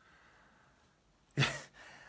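A man's short, breathy, voiced exhale, a surprised huff, about one and a half seconds in after a near-quiet stretch.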